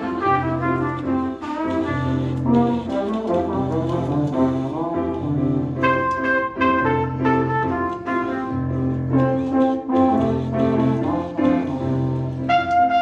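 Two trombones and a trumpet playing together: several melodic lines of short notes over a low bass figure that repeats about once a second.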